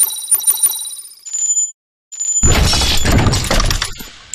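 Intro sound effects of a news-channel logo sting: a quick run of high, bell-like metallic pings, a short gap, then a loud crashing hit that carries on for over a second.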